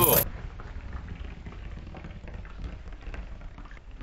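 Water from a hose spattering on a sailboat's deck and porthole glass: a steady patter like rain.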